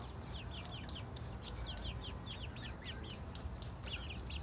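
Young chickens peeping: a dense, continuous run of short, high, falling chirps, several a second, as the flock pecks at food. Scattered sharp clicks sound through the peeping.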